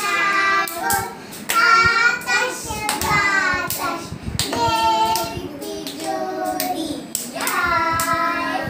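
Several young children singing together in high voices while clapping their hands, the sharp claps coming at uneven intervals.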